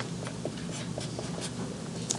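Black felt-tip marker writing on paper, a run of short, faint strokes as letters are drawn, over a faint steady low hum.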